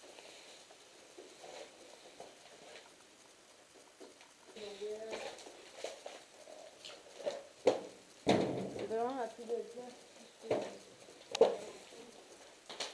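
Quiet, indistinct voices in a small room, broken by a few sharp knocks, the loudest about two thirds of the way in and again near the end.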